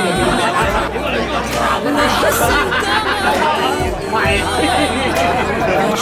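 Several men talking over one another in lively chatter, with background music underneath.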